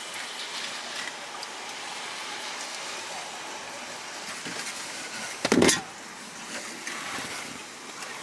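Steady hiss of rain on a parked car, heard from inside the cabin, with one short loud noise about five and a half seconds in.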